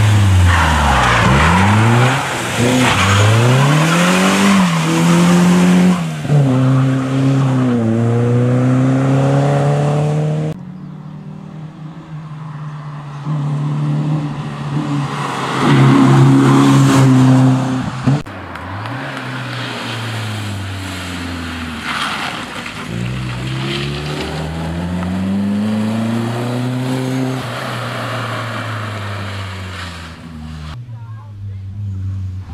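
Peugeot 205 rally car's four-cylinder engine revving hard up through the gears, its pitch climbing and dropping at each shift as the car drives past at speed. The sound is cut into three passes, with the loudest about halfway through.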